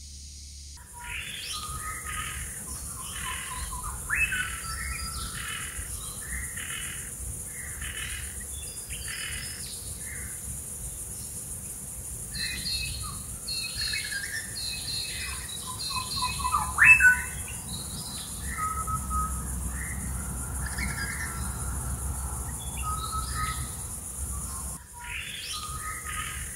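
Several birds calling and chirping, many short repeated calls overlapping, with one louder call about 17 seconds in, over a steady high hiss.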